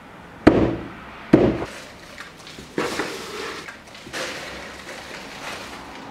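Two sharp thumps about a second apart, then a rustling of shredded paper packing being pulled out of a cardboard box and dropped.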